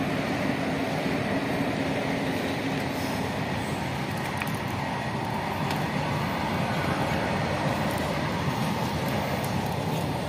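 Steady rumbling noise of a vehicle on the move along a rough dirt road, continuous and even, with a faint hum early on.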